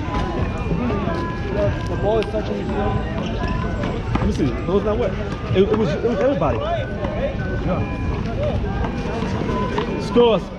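Indistinct chatter of several people talking at once, with a few sharp knocks.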